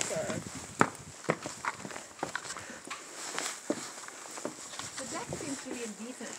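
Footsteps on weathered wooden outdoor stairs and deck boards, a hollow knock about every half second.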